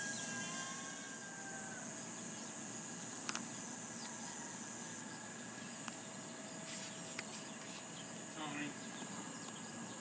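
Steady high-pitched hiss of background noise, with a few faint soft clicks.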